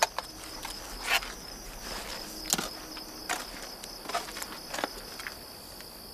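Crickets chirping steadily in a continuous high-pitched trill, with about six short clicks and scuffs scattered through.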